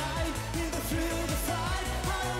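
Electro-pop song playing, a male voice singing over synths and a steady dance beat.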